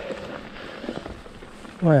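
Mountain bike climbing a loose gravel track: a steady rolling noise from the tyres on the stones, with a few light knocks from the bike about a second in.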